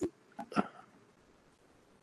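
A man's brief mouth and throat noise in a pause in speech: a small click, then a short voiced catch in the first second. After it the sound falls to near silence.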